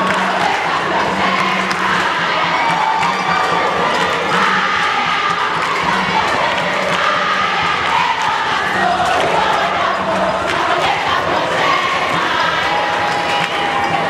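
A large crowd of schoolgirls singing and chanting jama songs together in the stands, loud and continuous, with cheering mixed in.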